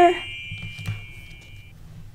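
A high, steady shimmering tone from a sparkle sound effect, which cuts off shortly before the end. Under it are a faint low room hum and a soft click about halfway through.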